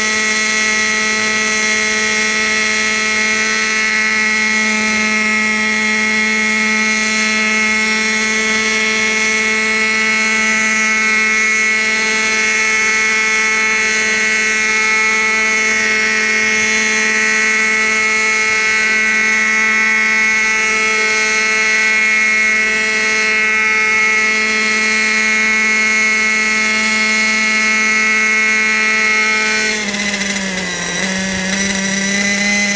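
Thunder Tiger Raptor 30 nitro RC helicopter's two-stroke glow engine and rotor head running steadily as it hovers a foot or two off the grass, giving a loud, high, even whine that holds one pitch throughout.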